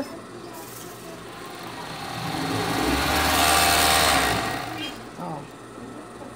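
Industrial overlock (serger) machine stitching a short seam through fabric. The motor speeds up over a second or two, runs steadily for about two seconds, then slows and stops.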